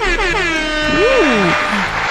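A horn-like tone with many overtones gliding steadily downward in pitch. About a second in, a shorter tone rises and falls.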